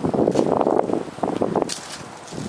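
Wind buffeting the camera microphone while it moves along the street: a loud, rough, uneven rush, with a brief sharp crackle just before the end.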